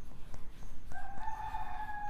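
A bird's long held call, starting about a second in, steady in pitch with one clear overtone.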